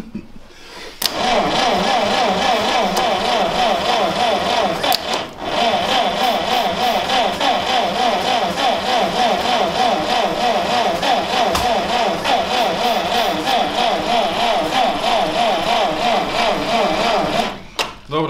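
Starter motor cranking the 1940 GAZ-M1's side-valve four-cylinder engine, the engine not catching after decades of standing, with fuel poured into the carburettor. The whine's pitch wavers up and down evenly, with a brief break about five seconds in, and stops near the end.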